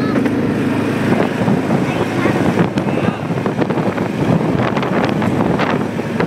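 Quad (ATV) running while it rides over a rough dirt road, with frequent clattering knocks and wind buffeting the microphone.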